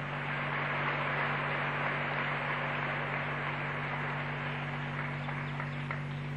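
Steady hiss over a low electrical hum, with no other sound: the background noise of an old analogue recording.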